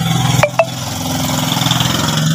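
Handheld hair dryer running with a steady motor hum and rushing air, broken by two quick sharp clicks about half a second in.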